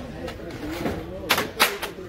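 Small boxed toy cars knocking against each other as they are pulled from a stack on a high shelf: two sharp clacks in quick succession in the second half, then a lighter third.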